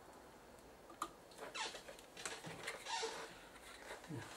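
Faint clicks and scratchy, squeaky scraping from soldering work on a printed circuit board as a capacitor is unsoldered, with one sharp click about a second in.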